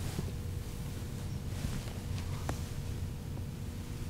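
Felt-tip marker drawing on a whiteboard, a few faint short squeaks of the tip, over a steady low room hum.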